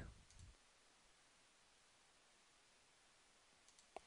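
Near silence: room tone, with a single faint mouse click just before the end.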